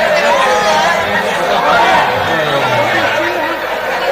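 Stage dialogue spoken into microphones and carried over a public-address system.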